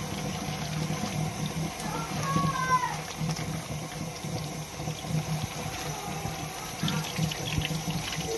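Kitchen tap running in a steady stream onto raw chicken skin held in a stainless steel sink, water splashing off the meat and into the basin.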